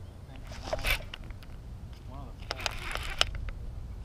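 Wind rumbling on the microphone, with a short rush of noise about a second in as a baitcasting rod is cast. A few sharp clicks follow from handling the baitcasting reel, and a faint voice calls in the distance.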